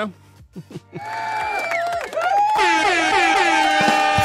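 An air-horn sound effect drop: after about a second of near quiet, a short music sting starts, and about two and a half seconds in a long, steady air-horn blast comes in on top of it. A man laughs briefly at the end.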